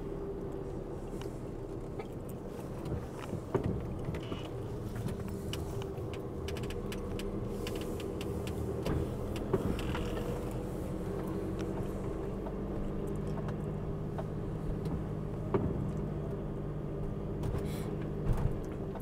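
VW Crafter camper van's engine running steadily at low speed, heard from inside the cab, with scattered light clicks and ticks.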